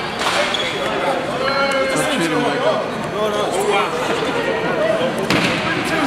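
Several people talking and calling out at once, voices overlapping, with a short knock just after the start and another near the end.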